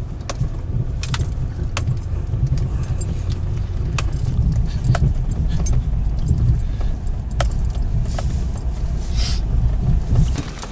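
GMC pickup truck driving over a rough ranch track, heard from inside the cab: a steady low road and engine rumble. Scattered light clicks and rattles run through it.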